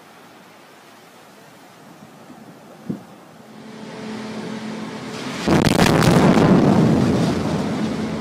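An underwater explosion heard from shore: a sudden loud boom about five and a half seconds in, followed by a rumble that fades over about two seconds. A steady low hum runs underneath.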